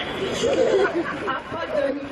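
Voices talking and chattering, with no music playing.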